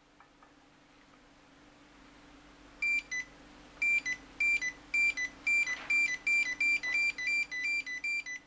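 Contrinex sensor tester's buzzer beeping each time a finger breaks the beam of an Autonics BUP-30S slot optical sensor, signalling that the sensor output has switched. One short high beep comes about three seconds in, then a run of identical beeps about twice a second that grows quicker toward the end as the beam is broken faster.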